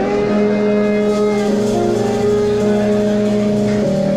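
Live funk/R&B band playing, with sustained chords that change about once a second.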